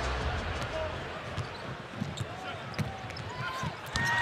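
A basketball being dribbled on a hardwood court, with a few short squeaks of sneakers, over a low arena crowd murmur.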